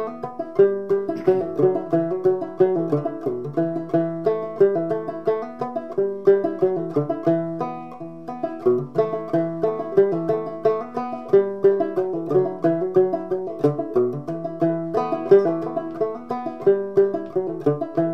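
Gut-strung banjo played clawhammer style: a steady, unbroken run of plucked notes in an even rhythm.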